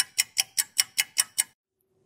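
Rapid, even ticking sound effect over an intro logo, about five ticks a second, stopping about one and a half seconds in.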